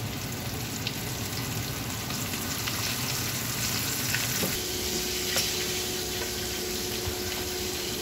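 Whole flour-dredged tilapia frying in hot oil in a pan: a steady sizzle with scattered pops and crackles. About halfway through, a steady low hum joins in.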